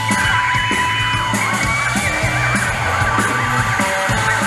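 A live rock band playing loud: electric bass and drum kit under two electric guitars holding long sustained notes.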